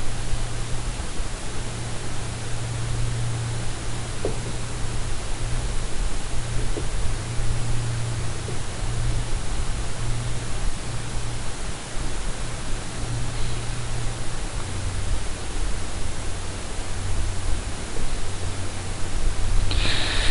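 Steady hiss with a low electrical hum: the background noise of the recording, with no speech.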